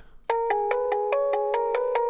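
Solo bell melody from a beat's stem, played through a steep low cut: quick bright bell notes, about five a second, rising and falling in pitch, starting about a quarter second in. The lows and bass are cut away so it will not bleed into the mix, leaving only the mids and highs.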